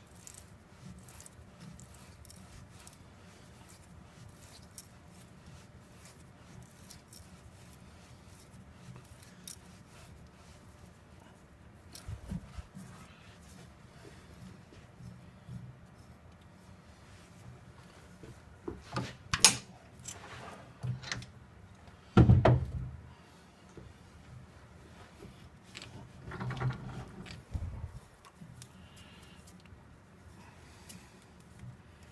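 Hand-tapping a thread into aluminium with a tap wrench and Helicoil tap: mostly quiet over a faint low hum, with a few scattered metallic clinks and knocks from the tap wrench being handled, the loudest a little past the middle.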